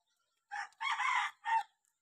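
A rooster crowing once: a short opening note, a long middle note and a short closing note, over about a second.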